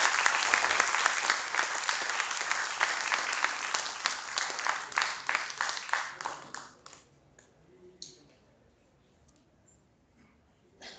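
Audience applauding: many hands clapping, thinning out and dying away about seven seconds in.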